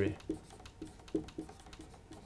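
Marker writing on a whiteboard: a run of short, separate strokes, roughly two a second, as letters are written.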